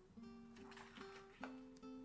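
Faint background music: a plucked guitar picking soft single notes that change about every half second.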